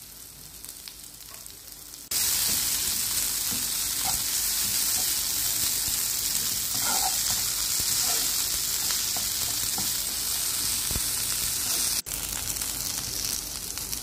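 Sliced onions, green chillies and curry leaves sizzling in a frying pan while being stirred with a spatula. The sizzle is low at first, jumps loud and steady about two seconds in, and breaks off briefly near the end before going on.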